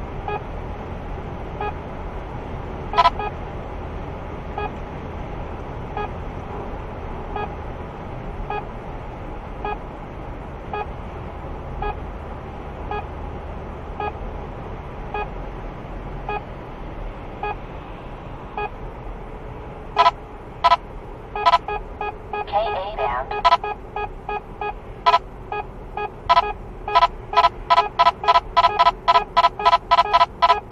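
In-car radar detector beeping a Ka-band alert. Faint beeps about once a second give way, about two-thirds of the way in, to louder beeps that speed up to about three a second as the signal of a police speed radar grows stronger, with a brief warbling tone among them. Cabin road noise runs underneath.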